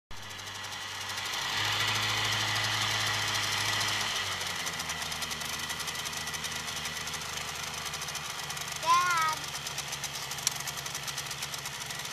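Small outboard motor on a hydroplane idling steadily, running a little louder for a couple of seconds before settling lower about four seconds in. A short pitched call cuts in near the end.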